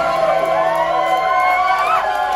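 Club audience cheering and whooping as a song ends, with one long rising whoop that stops near the end.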